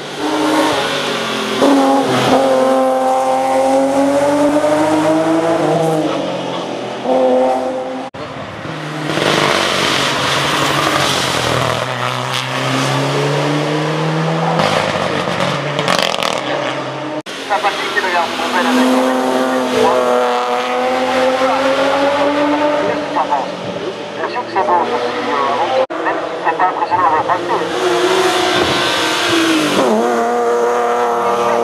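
Racing cars taking a hairpin one after another, each engine note falling as the car brakes into the bend and rising as it accelerates hard out of it, with several separate passes.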